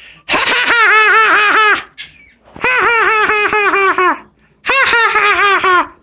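A parrot mimicking human laughter: three quick runs of 'ha ha ha ha', each about a second and a half long and made of evenly repeated, near-identical syllables, with short pauses between them.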